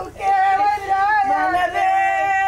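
A woman wailing a funeral lament in a high, long-held, wavering voice, taken up again after a brief break at the start.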